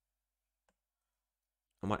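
Near silence broken by a single faint click about a third of the way in, from the computer input in use during 3D modelling. A man starts speaking right at the end.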